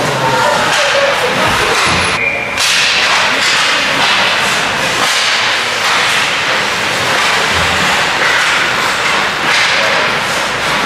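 Ice hockey play: a steady scraping hiss of skates on the ice, broken by frequent sharp clacks and slaps of sticks on the puck and ice.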